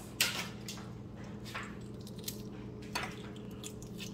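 Shell being peeled off a cooled hard-boiled egg by hand: a sharp crackle just after the start, then a few small, scattered crackles and squishes as the shell and membrane come away easily.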